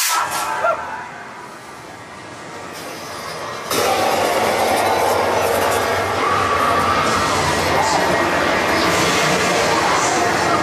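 Haunted maze soundtrack and effects: a dense, loud mix of noise, rumble and faint voices. It cuts in suddenly about four seconds in after a quieter stretch and then holds steady.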